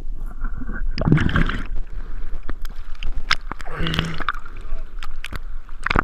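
Water churning and bubbling around a mouth-mounted GoPro as it moves underwater, with many sharp clicks and two longer rushing bursts about one and four seconds in.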